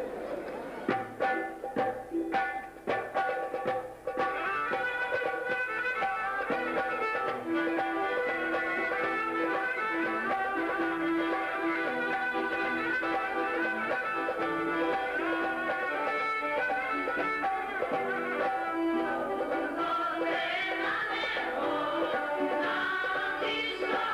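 Live traditional Thracian folk music: after a few scattered knocks and notes, it settles about four seconds in into a steady run of sustained melody.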